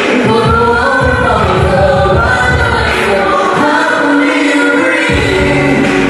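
Amplified live singing into microphones over music with a bass and drum beat. The bass and drums drop out for about a second and a half past the middle, then come back in.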